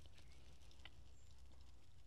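Near silence: faint outdoor background with a low steady hum and one faint tick just under a second in.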